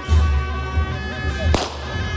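Tibetan Buddhist monastic ritual music accompanying a cham dance: long steady held notes over a deep pulsing bass, with one sharp crash about one and a half seconds in.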